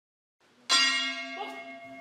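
A boxing ring bell struck once, a bright metallic clang that rings on and slowly fades.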